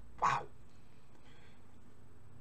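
A man's short vocal sound, a single brief syllable about a quarter second in, followed by low, steady room tone.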